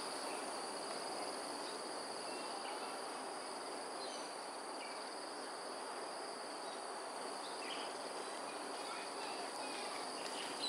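Insects droning steadily in two even high-pitched bands, unbroken, over a soft hiss of background noise. A few faint short chirps sound now and then, around four seconds in and again near eight seconds.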